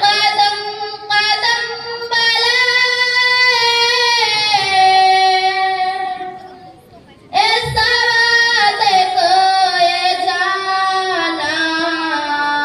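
A young female voice singing a ghazal unaccompanied, in long held notes across two phrases, with a short pause for breath about seven seconds in.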